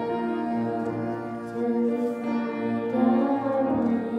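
A boy singing into a handheld microphone, holding long notes, over an instrumental accompaniment.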